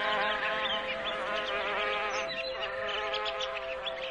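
Soft relaxation music of steady held tones, with many short bird chirps scattered over it.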